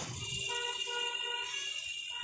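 A vehicle horn holding one long steady note in street traffic.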